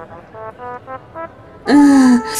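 Faint background film music: a few short, held notes at different pitches. Near the end a woman's voice comes in loudly.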